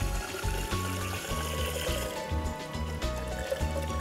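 Hot water running from a solar water heater's outlet pipe into a small plastic container, trickling as it fills. Background music with a steady low beat plays throughout and is the louder sound.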